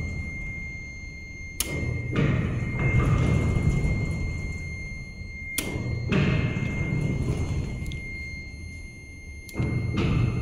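Freight elevator running: a sharp click about every four seconds, each followed by a low, rumbling swell, over a thin steady high whine.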